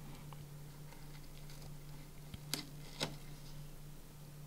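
Small paperboard box being opened by hand: faint rubbing of card, with two sharp little snaps about half a second apart in the second half as the flaps come free. A steady low hum runs underneath.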